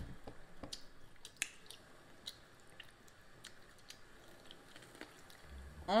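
Quiet chewing and biting of cucumber-boat tacos filled with ground turkey and cheese, with scattered short wet mouth clicks.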